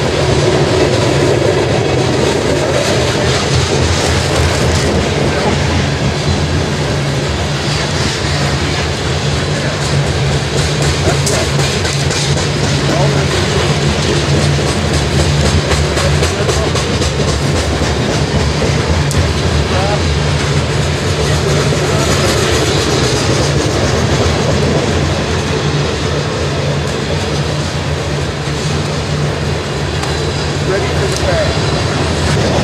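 Freight train of covered hopper cars rolling past at close range, a steady loud rolling noise with runs of wheel clicks over the rail joints, most frequent through the middle.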